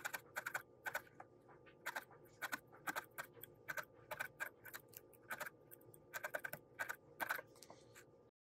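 A felting needle in a wooden handle repeatedly stabbing core wool wound onto a wire armature, an uneven run of sharp clicks, two to four a second, that stops shortly before the end.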